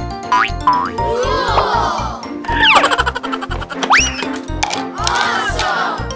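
Upbeat children's background music with a steady beat, overlaid with cartoon sound effects: several boings and swoops that rise and fall in pitch.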